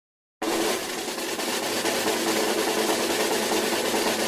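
A steady snare drum roll that starts abruptly about half a second in, used as a build-up sound effect.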